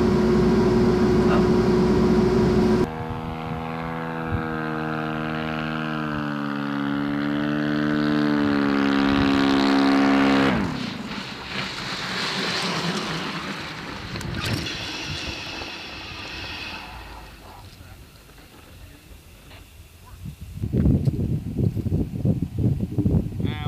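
A steady equipment hum for about the first three seconds. Then an RQ-7 Shadow unmanned aircraft's rotary engine drones as the aircraft comes along the runway, its pitch wavering, then dropping sharply as it passes about ten seconds in, and fading away after.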